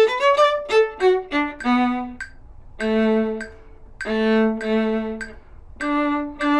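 Solo viola bowed: a quick rising run of notes, a few short detached notes, then longer held low notes with brief pauses between phrases.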